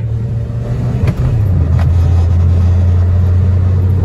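Maruti Suzuki Wagon R's three-cylinder petrol engine pulling hard under full-throttle acceleration, heard from inside the cabin as a loud, steady low drone with road rumble. The drone dips briefly about a second in, then carries on at a slightly lower pitch.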